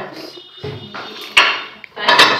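Serving spoon and dishware being handled while food is plated, with one sharp clink about one and a half seconds in.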